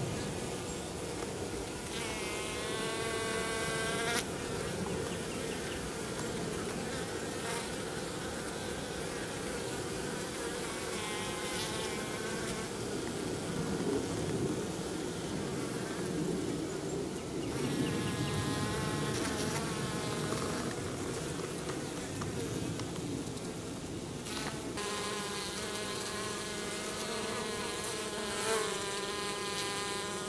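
Minnesota Hygienic honey bees buzzing in flight close by. Individual bees pass near several times, their buzz swelling and fading over a steady background hum.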